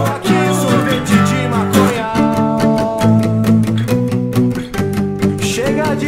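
Music led by a plucked acoustic guitar, over steady low notes that change about once a second.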